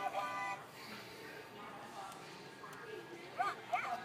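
Electronic sounds from a battery-operated toy's try-me sound chip: a short tune that stops early on, then two quick high yips like a puppy's bark near the end.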